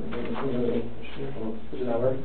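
A man talking in a low, mumbled voice, muffled and cut off at the top, over a steady low hum.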